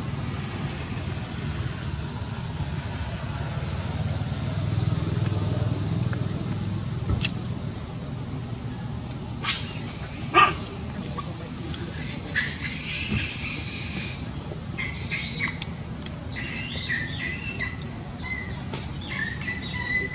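Macaque high-pitched screeching calls come in a loud cluster from about nine and a half seconds to fourteen seconds in. Shorter calls follow near the end. A steady low rumble runs underneath.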